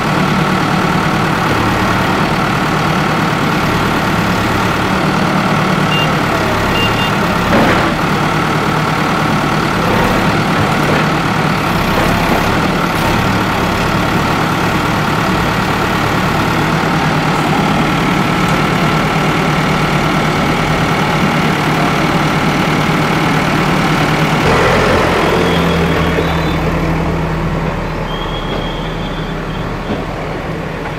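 Diesel engine of an Escorts Digmax backhoe loader running steadily while it works its arm against a house's concrete balcony and wall, with one sharp knock about a quarter of the way in. Near the end the engine note shifts and the sound falls off.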